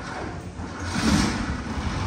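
Renault Express van's engine starting, catching with a rush of noise about a second in and settling into a low running rumble.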